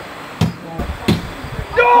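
Two thuds about two-thirds of a second apart: a thrown cornhole bag landing on the board.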